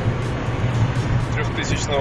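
Background music with a steady beat over the constant drone inside a Seat Cordoba driving at highway speed in heavy rain; a man speaks briefly near the end.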